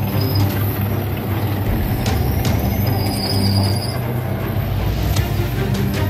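Tank engine running with a steady heavy low rumble as the tracked vehicle drives past on a dirt track, with a short high squeal about three seconds in.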